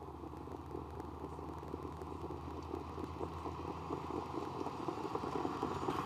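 Trackside ambience of a harness-race start: a low, steady rumble with a faint crackle as the trotters follow the mobile starting-gate truck.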